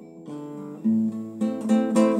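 Classical guitar playing alone: a few plucked chords, with a deep bass note coming in about a second in.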